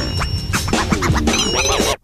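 Hip-hop instrumental with turntable scratching: a record sample dragged back and forth so its pitch swoops up and down, over a beat with heavy bass.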